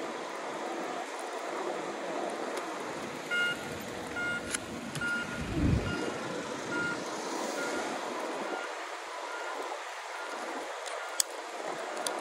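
Road traffic noise with an electronic warning beeper sounding one high note, repeating about twice a second for several seconds and fading away. A deep low rumble swells up about halfway through.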